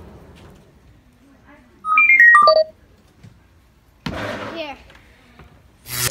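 A quick run of electronic beeps, each a clean single tone, stepping down in pitch over under a second. About a second and a half later there is a brief, softer sound with a falling pitch.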